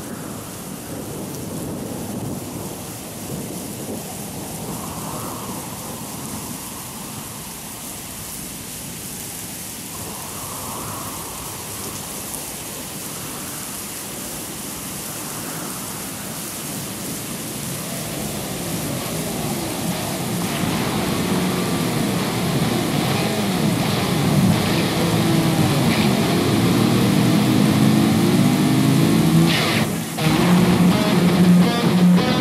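Thunderstorm and rain sound effect used as a track intro: a steady wash of rain with rumbling thunder. In the last third, gliding, wavering pitched sounds and a few sharp cracks build up and grow louder until it cuts off at the end.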